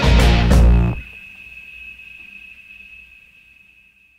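Loud live rock band music with electric guitar that cuts off abruptly about a second in. A single thin high tone is left ringing and slowly fades away.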